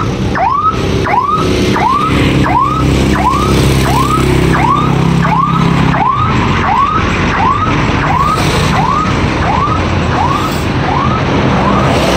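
An electronic siren-like warning tone that sweeps upward, repeating just under twice a second, over the steady running of a nearby engine that fades about halfway through.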